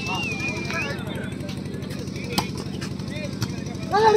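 A short warbling whistle blast near the start, then the sharp smack of a volleyball being struck about two and a half seconds in, over a low murmur of onlookers.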